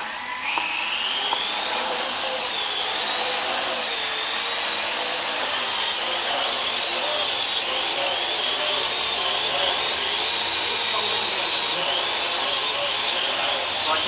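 Parrot AR.Drone quadcopter's four electric rotors spinning up and lifting off about half a second in, the whine rising in pitch, then hovering with a steady high-pitched whine that wavers slightly in pitch as the motors adjust.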